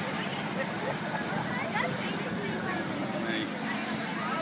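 Small engine of an amusement-park track ride car running steadily as the car drives along its guide rail, with scattered voices of people nearby.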